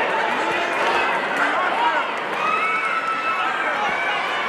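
A crowd of spectators shouting and calling out, many voices overlapping at a steady level.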